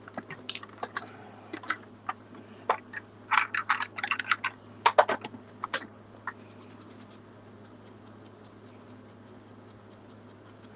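Hard plastic craft supplies clicking and clattering as a mini ink blending tool is taken out of a clear plastic storage case: a dense run of irregular clicks for about six seconds, then only faint, scattered ticks as the tool is handled against the paper.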